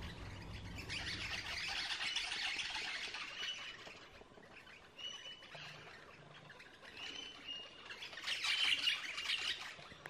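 Australian king parrots calling in the treetops: two spells of harsh, rapid chattering squawks, one about a second in and a louder one near the end, with short clear whistles in between.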